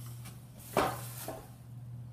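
A single knock about a second in as a boxed cardboard storage cube is handled on a desktop, over a steady low hum.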